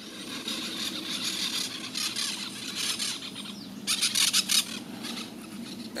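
Outdoor rural ambience: a steady high hiss with birds calling, and a short burst of rapid high-pitched chattering about four seconds in.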